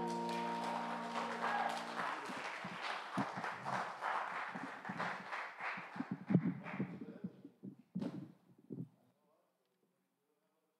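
The closing chord of a song's backing track holds and then cuts off about two seconds in. It is followed by a scatter of knocks, bumps and footsteps as a pulpit and its microphone are handled, which die away to near silence near the end.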